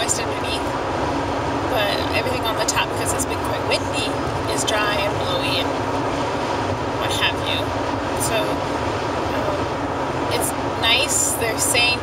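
Steady road and engine noise inside a moving car's cabin at highway speed, with a voice talking at times over it, around two and five seconds in and again near the end.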